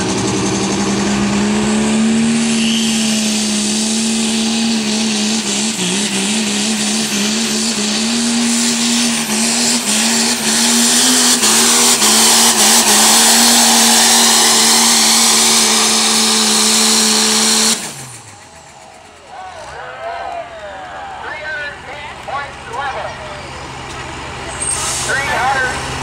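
Diesel Dodge Ram pickup engine held at high revs under full load as it drags a pulling sled, a steady drone with a hiss that builds, cutting off suddenly about eighteen seconds in when the pull ends. Voices follow over a quieter idle.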